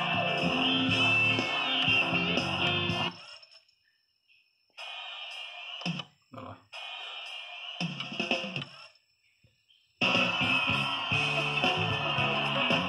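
Music from a CD playing on a JVC UX-A3 micro system through its speakers. It cuts off about three seconds in as the track is skipped, then comes back twice in short, thin snatches without bass between silences. Full music returns near the end as the next track starts.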